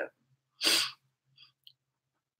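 One short, breathy nasal burst, under half a second long, from a woman with a head cold, followed by a couple of faint ticks.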